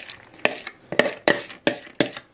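A kitchen utensil scraping and knocking against a plastic bowl as grated raw beetroot is pushed out into a glass bowl of chopped cabbage. It gives a string of quick, irregular sharp knocks.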